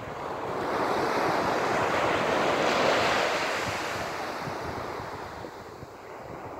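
Small waves breaking and washing up the sand in one long swell of surf that builds, peaks about halfway through, then slowly dies away. Wind rumbles on the microphone underneath.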